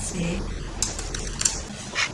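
Typing on a laptop keyboard: a few separate, irregular key clicks.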